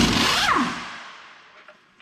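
Cordless impact wrench on the bolts of a corn head's stalk-chopper knives: a short burst that starts suddenly, with the motor's pitch rising and then falling away. The sound dies out over about a second and a half.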